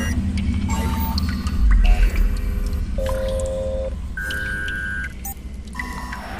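Dramatic background score with no speech: a steady low drone under a series of short held electronic tones at different pitches, with a deep rumble about two seconds in.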